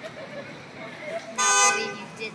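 A car horn honking once, a short steady blast of about half a second near the end.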